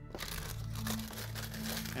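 A clear plastic parts bag crinkling and rustling as it is handled and lifted out of the kit box.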